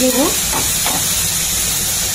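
Tomato and spice masala sizzling steadily in an aluminium kadai over a gas burner, with two short spatula scrapes in the first second.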